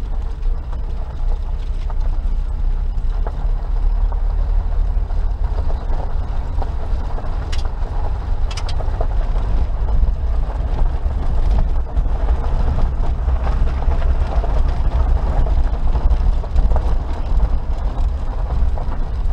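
Suzuki Jimny Sierra JB43 driving on a gravel road: a steady low rumble of engine and tyres on loose gravel, with two sharp clicks about eight seconds in.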